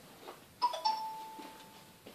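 A two-note chime, ding-dong: a short higher note about half a second in, then a lower note held for about a second and fading.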